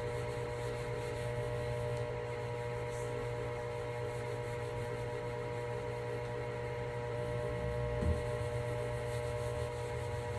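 A steady hum with several fixed pitches, under the soft rubbing of a cloth being wiped over finished wood; a faint knock about eight seconds in.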